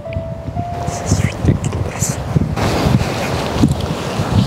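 Wind buffeting a handheld camera's microphone in irregular low gusts while walking along a sandy path. A short, faint steady tone sounds in the first second.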